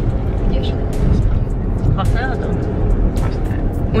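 Car cabin noise while driving: a steady low rumble of engine and road, heard from inside the car. Music with a beat plays over it, and a brief vocal sound comes about halfway through.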